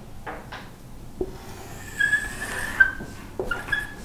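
A whiteboard marker squeaking in a few short high-pitched strokes as a straight line is drawn across the board, after a couple of light ticks of the marker against the board.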